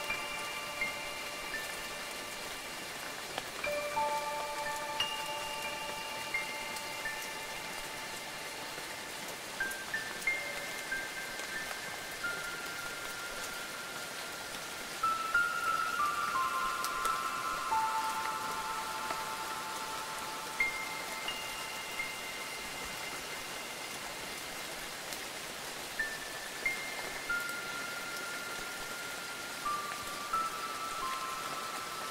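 Steady rain, with wind chimes ringing through it: every few seconds a cluster of clear, long-sustained notes strikes and slowly fades.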